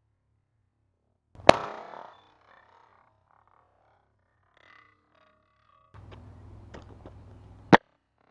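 A sledgehammer smashing into the case of an old Mac computer: one sharp crack about a second and a half in, followed by a short clatter of breaking parts. Near the end, after a few seconds of rustling, a second sharp thud as the sledgehammer is dropped onto the gravel.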